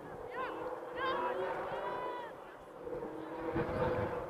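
High-pitched shouts and yells from people at the field, a run of short rising-and-falling calls with one longer, drawn-out yell about two seconds in, over a background of mixed voices.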